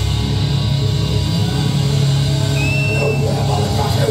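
Death metal band heard live from the crowd: heavily distorted guitars and bass holding a steady low chord with little drumming. A short high whistle sounds about two and a half seconds in.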